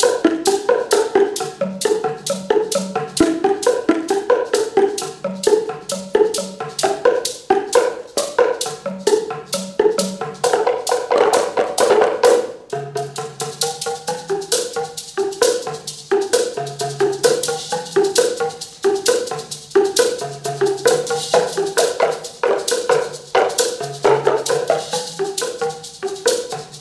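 Boomwhacker ensemble playing: tuned plastic tubes struck against the floor in a fast, continuous rhythm, giving hollow pitched pops in several notes over a repeating low bass figure. A brighter, rattly high layer thickens about halfway through.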